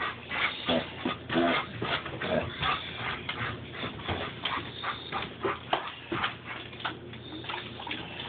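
A dog making short, repeated pig-like grunts and snuffles at irregular intervals.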